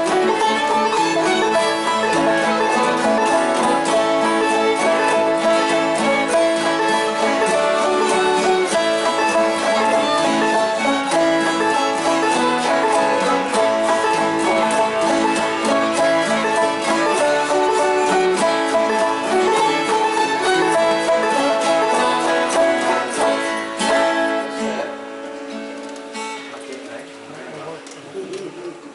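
Old-time string band playing a tune together: fiddle bowing the melody over a five-string banjo and other plucked strings. The tune ends about 24 seconds in and the instruments ring away.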